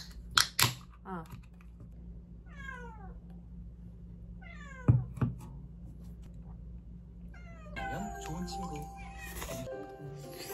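A house cat meowing three times, each call sliding down in pitch. A few sharp knocks sound near the start and one just before the second meow, and soft background music comes in near the end.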